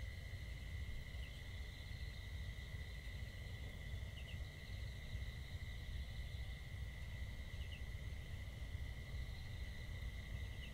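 Quiet night-time outdoor ambience: a steady high insect drone, like crickets, over a low rumble, with a few faint short chirps scattered through it.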